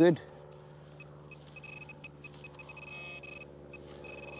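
Handheld XP MI-6 pinpointer beeping: a high electronic tone in short, uneven pulses, running unbroken for about half a second near the end of the third second before pulsing again. It is signalling a metal target in the dug hole.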